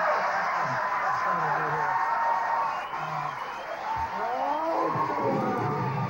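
Studio audience applauding and cheering, with music playing underneath.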